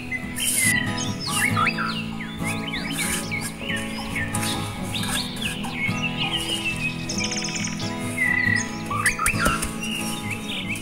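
Birds chirping and calling in many short, rising and falling notes over steady background music.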